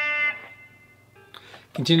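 Electric guitar holding a single sustained slide note, reached by sliding up to the 7th fret on the G string. The note dies away about half a second in, leaving the room quiet until a spoken word right at the end.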